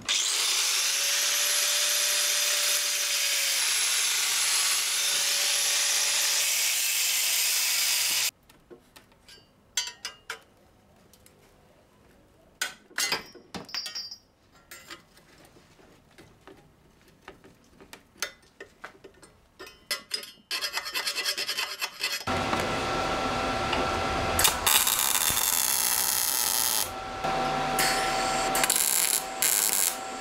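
Angle grinder cutting an opening into a steel exhaust tube for about eight seconds, then cutting off. Scattered clinks and knocks of metal parts being handled follow. From about 22 seconds in, a MIG welder crackles steadily as it welds the manifold tubes.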